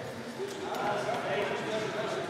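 Indistinct chatter of voices echoing in a large sports hall, with a few sharp ticks of table tennis balls bouncing.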